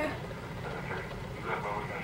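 A steady low background rumble, with a faint, quiet voice murmuring about a second in and again near the end.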